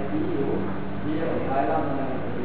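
A man's voice in short phrases, heard through a television's speaker and recorded off the set, over a steady low hum.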